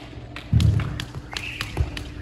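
A heavy thud about half a second in, followed by a quick, irregular string of sharp taps and knocks.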